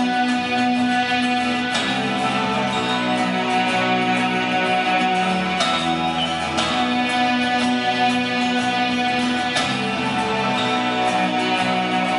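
Live guitar trio playing an instrumental introduction: sustained strummed and picked chords ringing out, with a new chord struck every few seconds.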